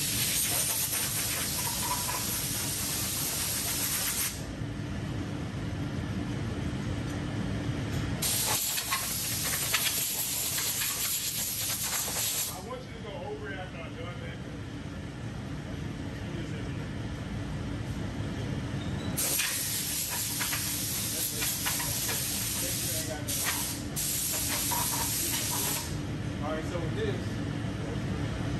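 Compressed-air blow gun blasting air over hanging metal parts in three long hissing bursts of about four to seven seconds each, with pauses between; the last burst is cut off twice for an instant.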